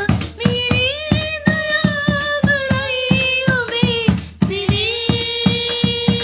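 A woman singing a song in long held notes, with a short break about four seconds in. Under the voice runs a steady beat of hand claps or hand-drum strokes, about three to four a second.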